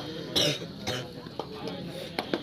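Voices of players and spectators around an outdoor kabaddi court, with a short, sharp, noisy burst about half a second in and a few light clicks after it.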